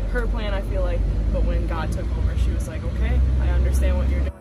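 People's voices over the steady low rumble of a van driving along.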